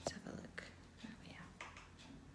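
Soft whispered muttering under the breath, a few short faint bursts after a small click at the start.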